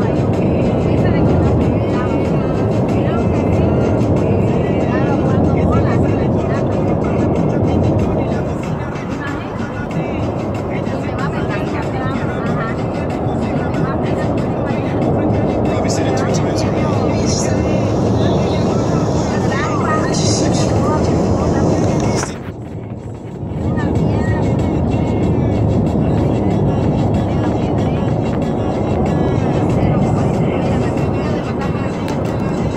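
Steady road and engine noise inside a moving car's cabin, with indistinct voices and music faintly over it. The noise drops away for about a second roughly three-quarters of the way through.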